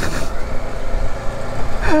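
Strong wind buffeting the microphone, a loud gusting rumble.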